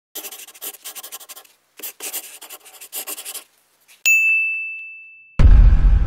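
Animated-title sound effects: quick scratchy writing strokes in two runs, then a single bell-like ding about four seconds in that rings and fades. Near the end a loud deep boom cuts in.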